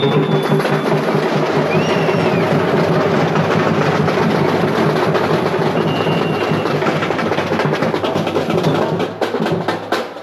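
Samba drums playing a loud, dense, fast percussion rhythm, dropping away near the end.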